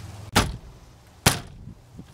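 Two sharp knocks about a second apart as a Toyota Echo steering wheel, stuck tight on its steering shaft, is yanked and jolts against its loosened centre nut.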